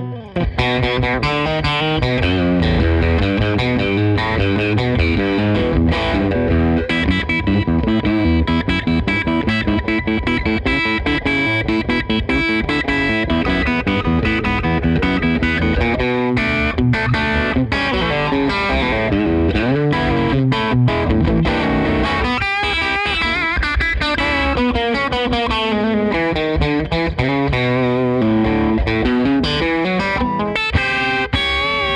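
Fender Custom Shop 1962 Telecaster Custom electric guitar played through an amplifier, a continuous run of single notes and chords, with bent notes about two-thirds of the way through.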